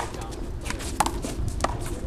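Sharp smacks of a hard rubber handball during a one-wall handball rally, striking hands, the concrete wall and the pavement: three crisp hits, one right at the start, one about a second in and one about a second and a half in.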